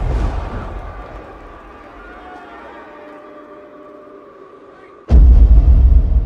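Film sound effects for a knockout blow in a cage fight: a fading ringing tone, then about five seconds in a sudden, loud, deep boom.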